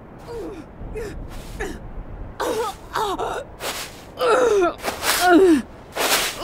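A woman gasping for breath in a run of short, pained gasps, each with a little cry that falls in pitch. The gasps start faint and grow louder and quicker, the loudest coming in the last two seconds.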